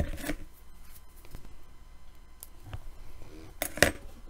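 Light rustling and small clicks from hands handling fly-tying materials at a vise, a strip of anti-static bag plastic and the bobbin thread, with a couple of sharper clicks near the end.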